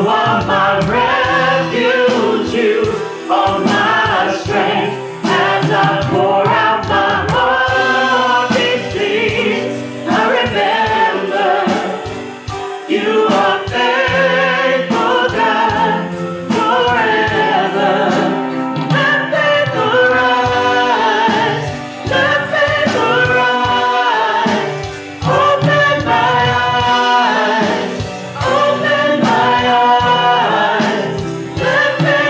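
A small worship team of mostly female voices singing a gospel song together through microphones, over a live band with a steady beat.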